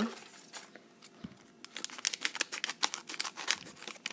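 Crinkly plastic LEGO Minifigures blind-bag packet being handled, with scattered crackles at first and a dense run of quick crackles and clicks in the second half.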